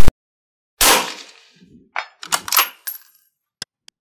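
Edited sound effects: a very short, loud glitch burst, then a noisy hit that dies away, followed by a quick string of sharp clicks and a brief high ding, like an on-screen button being clicked, and two small ticks near the end.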